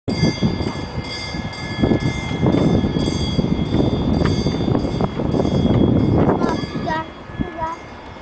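A train bell ringing about twice a second, most likely from the garden railway's sound system, over heavy low background noise. It stops about six and a half seconds in.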